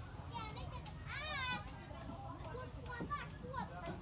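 High-pitched children's voices chattering and calling out, over a steady low rumble.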